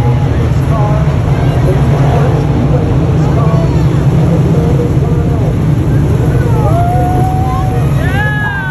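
A pack of dirt modified race cars' V8 engines droning as they circle the track behind a pace car, the pitch rising and falling as cars pass, with one car revving up near the end.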